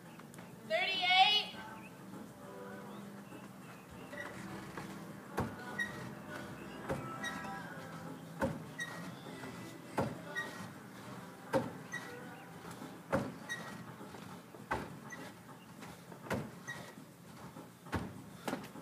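A wall-mounted pull-up bar and its brackets knocking once per rep, about every one and a half seconds, under a man doing hanging toes-to-bar reps. A short voice sound comes about a second in.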